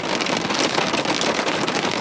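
A ridged potato chip being crunched and chewed close to the microphone, over rain falling on the car's roof and windows, heard from inside the cabin, with many fine crackles at a steady level.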